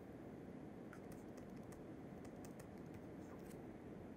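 Faint, scattered clicks and taps of a pen stylus on a tablet screen as a word is handwritten, over quiet room noise.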